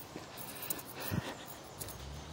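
Quiet outdoor background with a few soft footsteps on a concrete path, one a little heavier about a second in.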